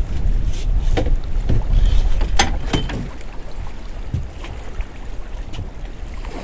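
Wind rumbling on the microphone and choppy sea water lapping around a small boat, with several sharp knocks in the first three seconds.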